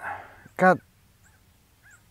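A man's voice: a breath and one short spoken word, then quiet.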